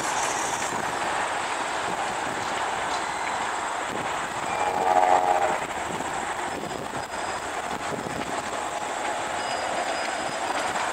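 Passenger train of private railroad cars passing at a distance, a steady rumble mixed with highway traffic. A brief pitched sound rises over it about halfway through.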